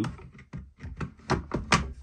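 A quick series of sharp clicks and knocks from a framing nailer's magazine being handled and set against the nailer body, test-fitting the reworked 21-degree magazine. The loudest knock comes near the end.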